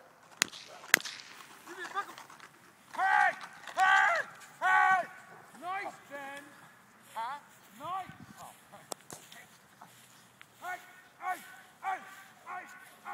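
Two sharp cracks about half a second apart near the start, then a run of short, loud shouted calls from a person, several in quick succession around 3 to 5 seconds in and more towards the end.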